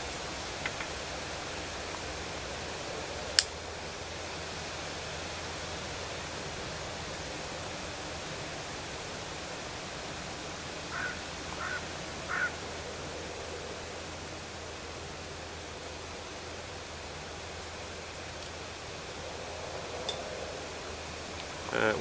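Steady outdoor background hiss, with one sharp click about three seconds in and a few faint short sounds around the middle.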